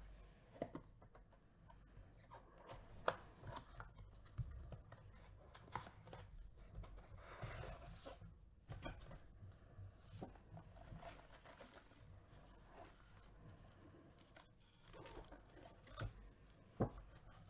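Faint handling noise from a cardboard trading-card box being opened: scattered light clicks and rustles of the cardboard, with a longer scraping rustle a little past the middle. Near the end come more rustles as the foil-wrapped card packs are taken out.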